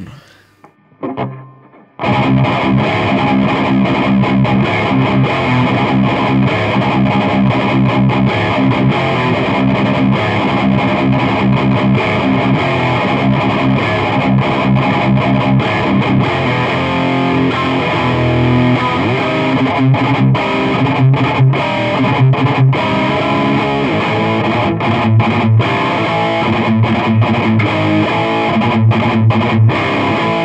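Distorted electric guitar played through a Peavey 6505+ 112 valve combo amp, recorded with an Akai ADM 40 dynamic microphone placed close to the right edge of the speaker cone. The riff starts about two seconds in and is loud and choppy, with frequent short stops.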